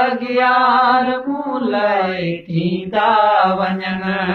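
Men singing a Sindhi song, drawing out long held notes that waver in pitch, with a short break a little past halfway before the next drawn-out phrase.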